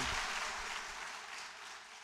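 Audience applause dying away, fading steadily.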